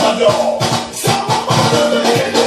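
Recorded music with a steady, driving beat and shaker percussion, played loud.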